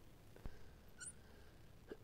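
Near silence, broken by a faint tap about half a second in and a brief faint squeak about a second in: a marker tapping and squeaking on lightboard glass as numbers are written.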